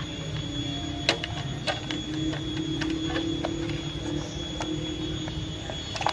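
Scattered light clicks and knocks of a Profan 20 W four-blade hanging fan's plastic blades and housing being handled, with a steady low hum underneath from about half a second in until near the end.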